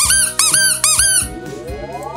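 A squeezed rubber toy squeaking four times in quick succession, each squeak rising and falling in pitch, then a rising slide-whistle-like glide. Background music plays throughout.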